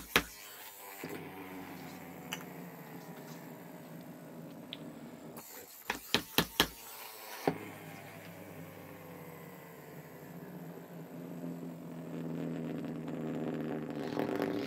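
A Duncan Wizzzer top spinning on a tabletop with a steady whirring hum that slowly drops in pitch. About five and a half seconds in it is revved again with a quick run of sharp strokes against the table, then set down to hum again, louder near the end.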